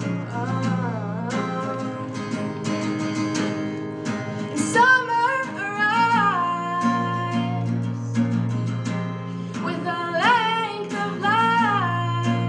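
A woman singing live to her own strummed acoustic guitar, her voice rising and falling in long held phrases over the steady chords.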